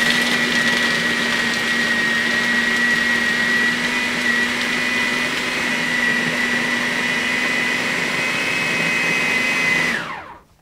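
Food processor motor running at full speed, blending chickpeas and garlic into a smooth puree: a steady high whine over the churning of the bowl. It is switched off at the very end and winds down.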